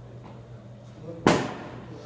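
A baseball bat striking a ball once, a single sharp crack with a short ringing tail about a second and a quarter in.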